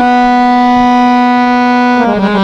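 Harmonium holding one long, steady, loud note, as part of the lehra melody that accompanies a tabla solo.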